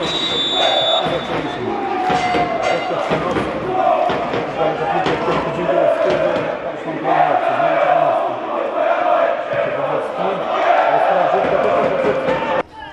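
Football crowd chanting in the stadium stands: massed voices singing a repeated chant that swells and falls in phrases about a second long.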